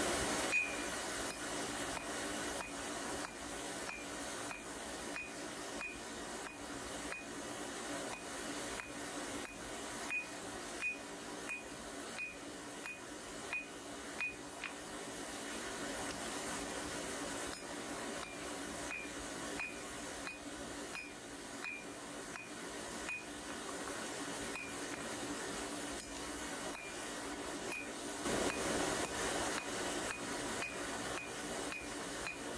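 Hand hammer striking red-hot steel on an anvil, forging a bar made from a ball bearing's inner race: steady blows about two a second, each with a short metallic ring, pausing for a few seconds midway and again near the end.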